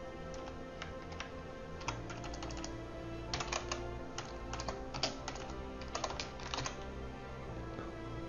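Typing on a computer keyboard: irregular key clicks that come in quicker clusters from about three seconds in, over faint, steady background music.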